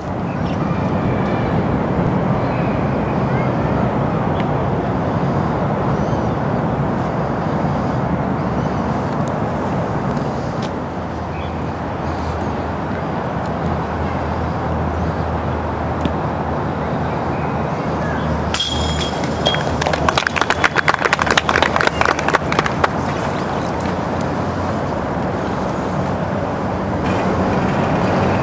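Disc golf disc striking the metal chains of a basket with a bright jingle about two-thirds of the way through, followed by a few seconds of spectators clapping. Beneath it is a steady outdoor background of distant voices.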